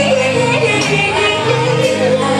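Live R&B band music with a woman singing a drawn-out, bending vocal line into a microphone over steady bass notes.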